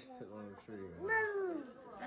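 A short, high-pitched call about a second in, rising briefly and then gliding down over roughly half a second, after a few faint vocal sounds.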